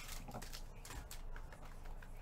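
Light, irregular clicks of a computer keyboard being typed on, a few taps a second.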